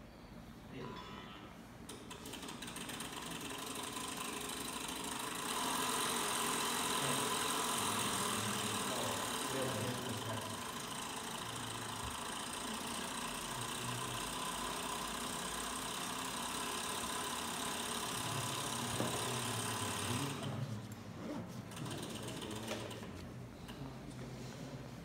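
Small variable-speed electric motor of a string-vibration exciter running with a steady mechanical hum. It gets louder about five seconds in as its speed is raised to drive the string into higher modes, then drops away about three-quarters of the way through.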